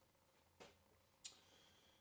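Near silence: room tone with two faint clicks, a little over half a second apart.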